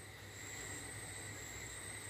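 Faint, steady background hiss with a thin high-pitched whine and a low hum: room tone during a pause in speech.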